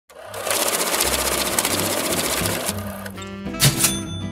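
Intro sting for a channel logo: a loud, fast rattling buzz for about two seconds, then cut to a short music tag with held notes and two bright crashes near the end.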